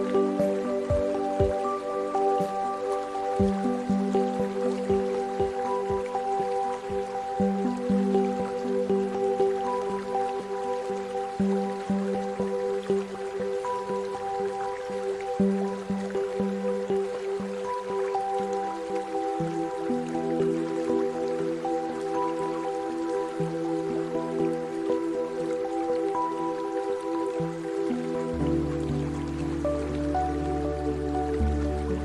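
Slow, calm ambient music of long held chords that change slowly, with a deeper chord coming in near the end, laid over gentle water sounds of soft dripping.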